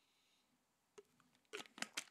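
Near silence: room tone, with one faint click about a second in and a man's voice starting up again near the end.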